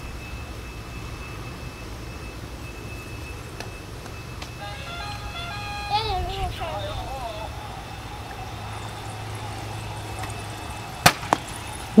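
A short electronic jingle of stepped notes about four and a half seconds in, running into a wavering, warbling tone, over a steady low hum. Two sharp knocks come near the end.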